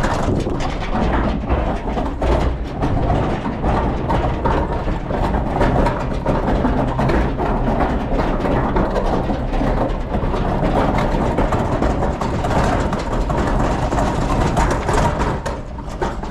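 Large four-wheeled metal communal bin rolled over cracked, uneven paving, its castors and steel body rattling and clattering without a break. A refuse truck's diesel engine runs low underneath.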